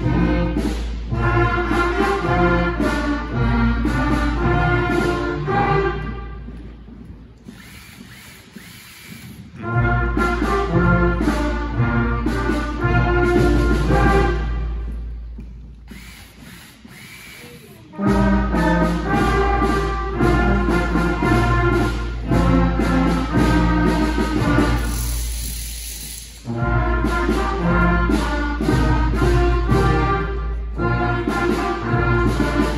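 A sixth-grade concert band of woodwinds and brass plays a piece in phrases. The band fades to near quiet twice, about a quarter of the way in and just past halfway, and each time comes back in together sharply. There is a shorter dip near the end.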